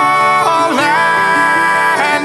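Country-rock song: a sung vocal held on long notes over guitars and band. About halfway through, the voice dips and slides up to a higher note, which it holds.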